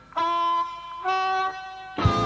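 Solo blues harmonica, unaccompanied, playing two held notes, the second a little higher than the first.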